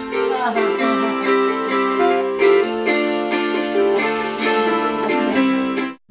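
Belarusian psaltery (husli) being plucked in a folk tune, several strings ringing on and overlapping as new notes are picked. It cuts off sharply at the end.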